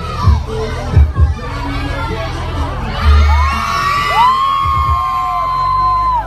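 Children shouting and cheering, with two long, high-pitched screams held for over a second in the second half, over music with deep bass thumps.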